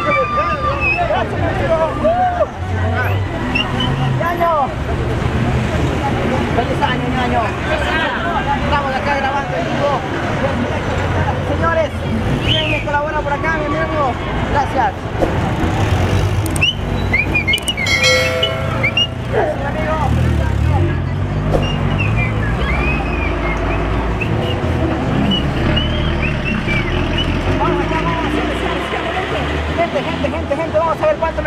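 City street traffic: car engines running and cars passing, with people talking over it. A car horn sounds briefly about eighteen seconds in.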